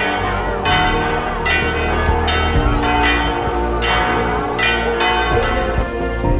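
Church bells ringing in a peal, a new strike about every three-quarters of a second, marking the couple leaving the church after the wedding.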